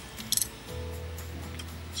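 Hand-held snap-setting tool giving a couple of quick metal clicks about a third of a second in as its release lever is worked, freeing a freshly crimped canvas snap. Steady background music runs under it.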